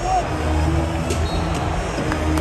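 Basketball arena crowd chatter during live play, with low sustained notes from the arena sound system starting about half a second in and a few sharp knocks.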